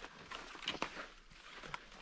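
A few irregular footsteps with rustling close to the microphone: short soft knocks and crackles over a faint background.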